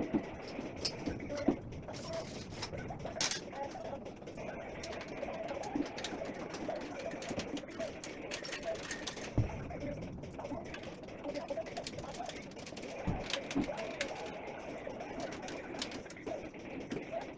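Console table being assembled: a dense run of light clicks, taps and rustles as the metal frame and tabletop are handled, with two heavier thumps about nine and thirteen seconds in.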